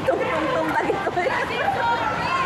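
A group of women chattering and calling out to one another at the same time, their voices overlapping.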